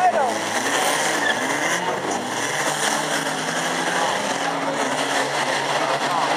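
Banger racing cars running and revving their engines around the track, heard over the fence, with nearby spectators talking.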